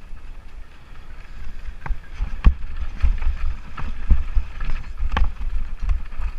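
Wind rumble on the camera microphone and the clatter of a Lapierre Spicy 327 enduro mountain bike riding fast down a rocky dirt trail, with several sharp knocks as the wheels hit stones.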